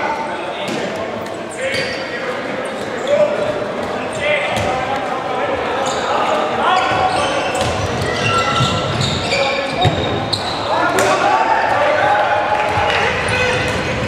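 Handball game in a large sports hall: players and spectators shouting, with a handball bouncing on the wooden court at scattered moments.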